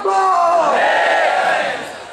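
A man's long, drawn-out slogan cry shouted into a microphone, with a crowd shouting along; it fades out near the end.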